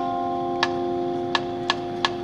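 Marching band holding a steady sustained chord while three sharp percussion clicks sound, the last two close together near the end.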